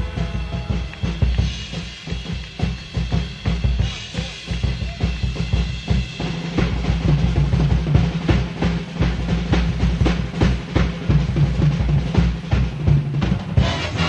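Drum kit playing a busy passage in a live big-band jazz performance, bass drum and snare to the fore with rapid strikes, on an old tape recording with the highs cut off.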